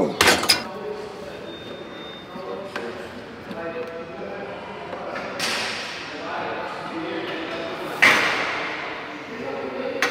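Gym weights clanking, echoing through a large hall over indistinct voices: sharp knocks right at the start, another loud crash about five and a half seconds in, and the loudest crash about eight seconds in, which rings on and fades.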